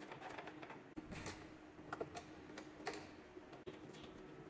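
Faint, light plastic clicks and taps as a cable gland (waterproof port) on a plastic distribution box is handled and tightened around a battery cable, over a low steady hum.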